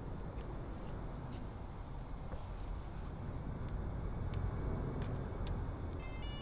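Steady low rumble of background noise with a few faint clicks scattered through it.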